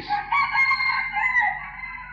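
A rooster crowing once: a long call held for nearly two seconds that falls in pitch near the end.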